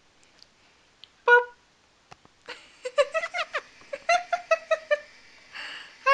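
Senegal parrot calling: a short single call about a second in, then a quick run of short chattering notes from about halfway through.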